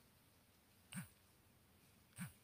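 Near silence, with a single soft tap about a second in as a key is pressed on a phone's touchscreen keyboard.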